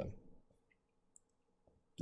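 Near silence: room tone, with a single faint click just over a second in.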